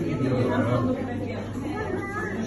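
Chatter of several people talking at once, no words made out.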